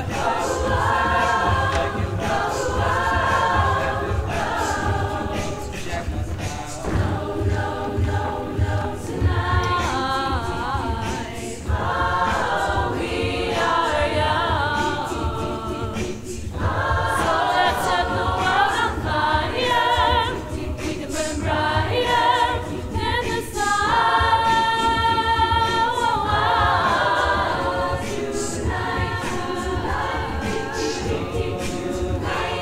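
Mixed-voice a cappella choir singing in close harmony, with no instruments, over a steady low pulse. The chords shift every second or two, and one chord is held steady about three-quarters of the way through.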